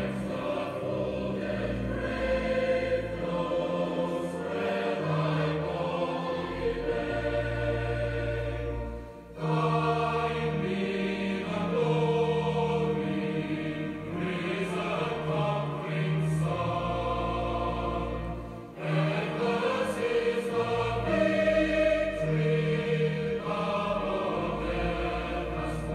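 Choir singing a hymn in long sustained phrases, with short breaks between phrases about 9 and 19 seconds in.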